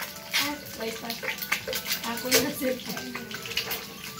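Eggs frying in hot oil in a pan, sizzling steadily with irregular sharp pops and crackles.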